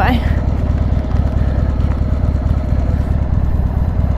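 A Harley-Davidson Sportster 883's air-cooled V-twin idling steadily.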